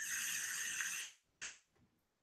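A steady airy hiss for about a second as a puff is drawn through a vape device, followed by a brief second hiss.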